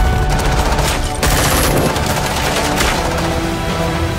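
Dramatic action-film trailer music mixed with rapid bursts of gunfire sound effects, with a sudden loud hit a little over a second in.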